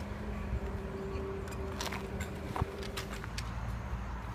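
Class 322 electric multiple unit pulling out of a station: a steady low rumble with a constant electrical hum, and a few sharp clicks from the wheels and rails about two seconds in.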